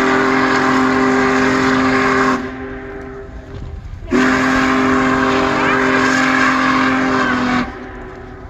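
Union Pacific 4014 Big Boy steam locomotive sounding its whistle: two long, steady blasts, each a chord of several tones. The first cuts off a couple of seconds in, and the second starts about four seconds in and holds for three and a half seconds.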